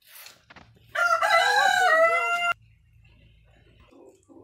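A rooster crowing once, a single loud crow lasting about a second and a half that cuts off suddenly.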